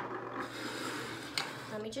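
Hands handling objects on a desk: a click, then rough rubbing and rustling, with another click about a second and a half in, as she reaches for the oil kit.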